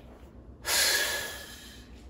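A man's heavy, breathy sigh, starting about half a second in and fading away over about a second.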